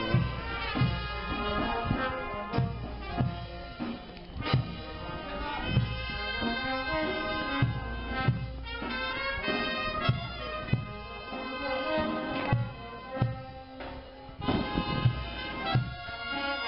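Procession band music: wind and brass instruments play a held, reedy melody over regular bass-drum beats.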